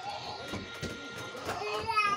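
Children's voices in the background, with one high voice rising near the end, over small clicks and mouth sounds of eating.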